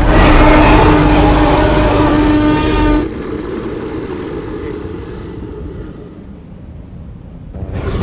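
A loud cinematic sound effect: a held, horn-like tone over a deep rumble for about three seconds that cuts off abruptly, leaving a lower rumble that fades away. A new loud sound comes in near the end.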